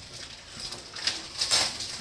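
Light rustling and scraping of the boxed stethoscope being handled on a cardboard surface, with a couple of brief louder scrapes in the second half.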